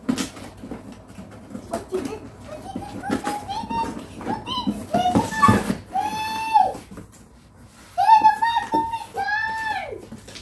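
A young child's high-pitched voice calling out and squealing in repeated bursts from about three seconds in, over the light rustling and knocks of a cardboard box being opened and its packing handled.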